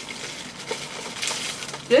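Plastic protective wrapping rustling and crinkling as it is handled and pulled away.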